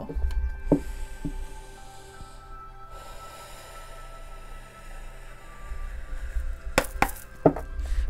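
Soft background music of steady held tones, with the sharp snaps and taps of a tarot deck being shuffled by hand: two light clicks about a second in and a louder cluster of three near the end.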